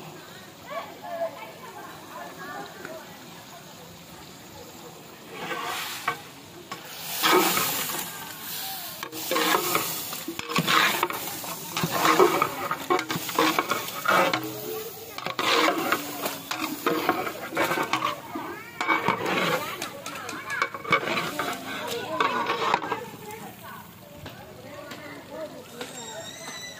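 Mutton and chilli masala being stirred in a large metal pot with a long-handled ladle: irregular scraping and churning strokes of the ladle against the pot and the meat, starting about five seconds in and going on until near the end. The pot is on the heat, and the meat sizzles under the stirring.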